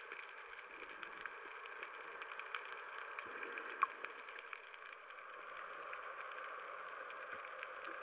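Underwater ambience picked up by a waterproof camera: a steady muffled hiss with many scattered faint clicks and crackles, and one sharper click about four seconds in.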